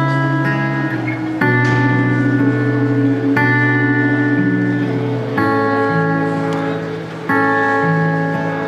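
Live band playing a slow instrumental introduction: sustained guitar chords over bass, the chord changing about every two seconds.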